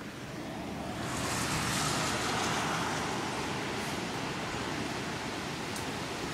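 Hurricane wind and rain outdoors: a steady rushing noise that swells up over the first two seconds and then holds.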